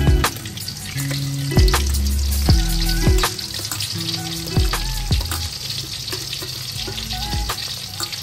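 Peeled peanuts frying in a wok of hot oil: a steady sizzle as they are poured in. The sizzle sits under background music with held bass notes.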